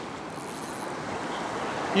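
Ocean wash surging over a rock platform: a steady rushing noise that swells slightly toward the end.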